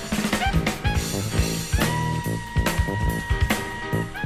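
Jazz music with a drum kit keeping a steady beat over a bass line, and a single long held note from a little before halfway through to the end.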